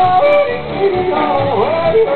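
A singer yodeling, the voice flipping quickly up and down in pitch, over instrumental accompaniment.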